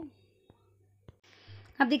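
A pause in a woman's speech: near silence with two faint clicks, then a soft in-breath just before she starts talking again near the end.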